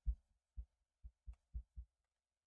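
A few soft, low thumps at irregular spacing, about six in two seconds: a stylus tapping on a drawing tablet, carried through the desk to the microphone.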